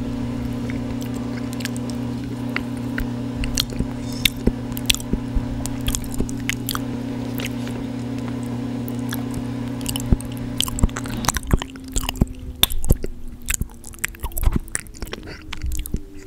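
Close-miked chewing and crunching of food, with sharp crackling bites that come faster in the second half. Underneath, a laundry machine runs with a steady hum that changes pitch about two-thirds of the way through.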